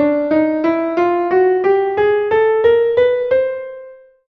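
Piano playing single notes one after another, about three a second, climbing step by step from low to high over roughly an octave. The last, highest note rings on and fades away near the end.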